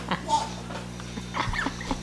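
Recorded horse sounds from a plush unicorn rocking horse's sound unit: a whinny and clip-clop hoofbeats with a little music, with a voice coming in near the end.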